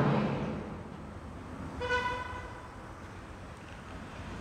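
A single short vehicle horn toot about halfway through, over low room noise.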